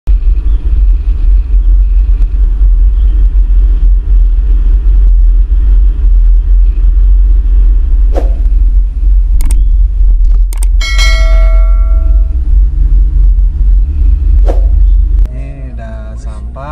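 Loud, steady low rumble of a car on the move, heard from inside the vehicle. About eleven seconds in, a ringing chime sounds for over a second, with a few sharp clicks around it.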